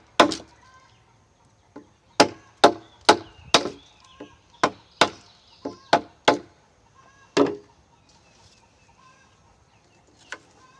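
Wooden mallet striking a wide framing chisel as it cuts a mortise into a hewn timber beam: about a dozen sharp wooden knocks at an uneven pace, stopping about seven and a half seconds in.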